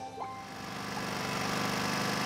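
Cartoon car engine sound effect, a low pulsing run that grows louder from about half a second in, over light background music.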